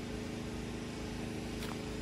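Generator engine running steadily at an even pitch.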